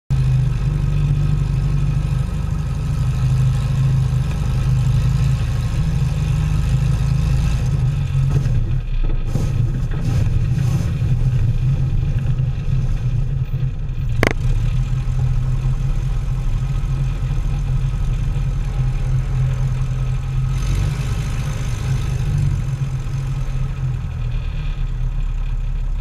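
Light bush plane's piston engine and propeller running steadily through a low approach and landing rollout, heard close up from a camera under the wing. The engine note shifts about eight seconds in, and there is one sharp click about fourteen seconds in.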